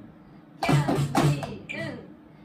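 A short pause, then a man's voice speaks a drum rhythm as syllables for about a second.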